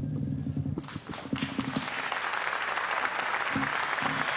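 Large audience applauding, the clapping starting about a second in and growing louder. A knock and a short low hum come just before it.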